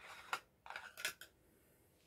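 Faint rustling and a few light clicks as a glass jar is handled and its lid twisted off, mostly in the first second or so.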